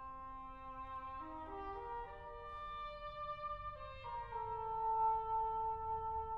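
Orchestral classical music with brass to the fore: held chords that step upward over the first two seconds, then settle on one long sustained chord.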